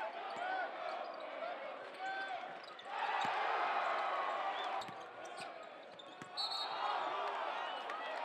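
Basketball game sound in a gym: the ball bouncing and shoes squeaking on the hardwood court over crowd noise and voices. The crowd grows louder about three seconds in and again near the end.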